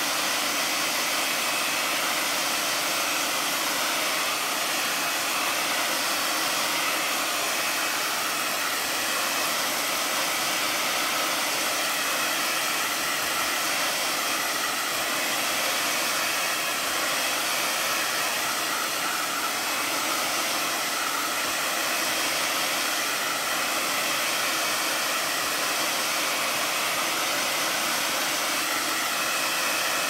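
Handheld hair dryer blowing steadily at a constant level, drying wet acrylic ink on a paper page.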